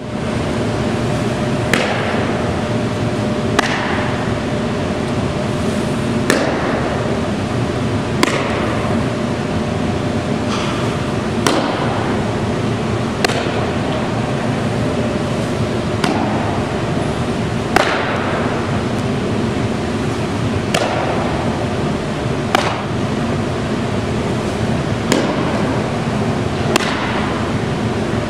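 A softball smacking into a catcher's mitt, about a dozen sharp pops roughly every two seconds, each with a short echo, over steady background noise with a faint constant tone.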